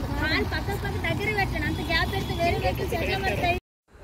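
People's voices talking in the background over a steady low rumble, cutting off suddenly to silence near the end.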